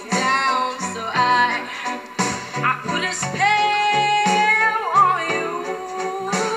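A high female voice singing a melody over instrumental accompaniment, holding one long note about halfway through that wavers at its end before the phrase goes on.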